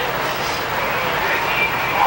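Steady outdoor background noise of vehicles and traffic, with faint voices of people talking in the background.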